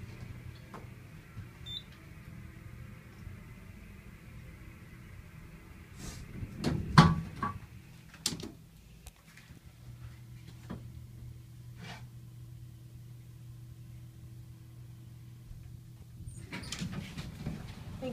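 Hydraulic elevator car descending with a steady low hum, then a loud knock and rattle about seven seconds in as it arrives at the floor. After a few small clicks, another steady low hum runs for several seconds and cuts off suddenly about sixteen seconds in.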